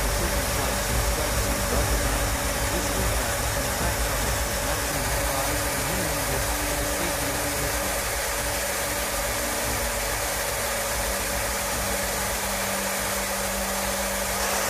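Steady jet engine and airflow noise inside a B-52 bomber's cabin in flight: an even rushing drone with a faint constant hum, unchanging throughout.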